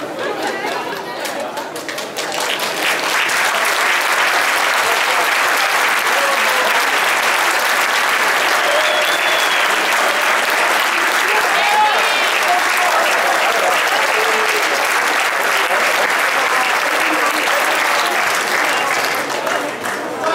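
Crowd of spectators applauding steadily, with voices among the clapping. The applause swells about two seconds in and dies down near the end.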